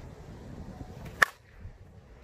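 A DeMarini Vanilla Gorilla slowpitch softball bat, with a 12-inch APC composite barrel, hits a softball once, about a second and a quarter in. The contact is a single sharp crack with a brief ring.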